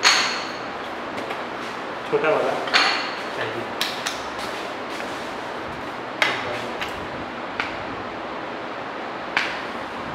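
Sharp metallic clinks with a brief ring as a paintbrush sweeps sand off a metal permeameter mould and knocks against the mould and its threaded tie rods: the loudest right at the start, another about three seconds in, and lighter clicks scattered after.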